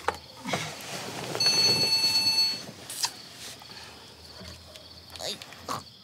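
Mobile phone ringing: one high electronic ring lasting about a second, followed about 3 s in by a sharp click.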